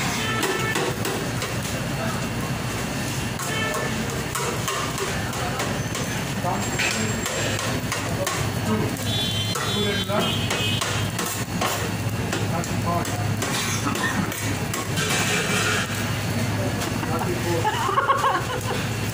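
Background music over a hubbub of voices and a steady low hum, with scattered metal clinks of a serving scoop scraping a steel shawarma tray.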